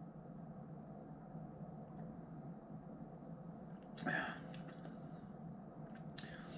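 Quiet room tone with a faint steady hum while a man drinks beer, broken by one brief breath sound about four seconds in.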